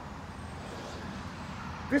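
Steady low background rumble with no distinct events, ending with a man starting to speak.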